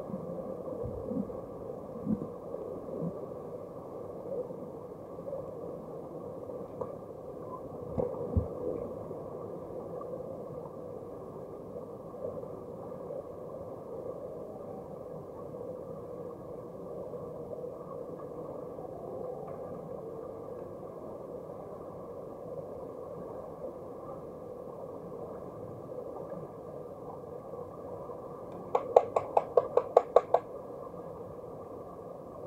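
Underwater pool sound picked up by a submerged camera during underwater hockey play: a steady muffled hum with one held tone, a few scattered knocks, and near the end a loud quick string of about eight sharp pulses.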